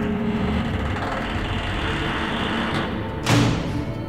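Dramatic soundtrack music: a swelling whoosh builds over about three seconds, then one sharp hit with a low thud lands just after three seconds in.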